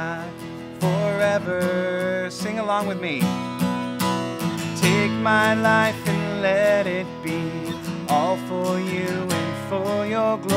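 Man singing a worship song, accompanying himself on a strummed acoustic guitar.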